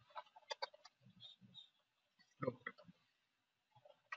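Faint keystrokes on a computer keyboard: a quick run of clicks in the first second and another short burst a little past the middle, as a line of code is typed.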